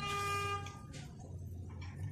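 A single steady, horn-like note that stops within about a second, over a low steady hum.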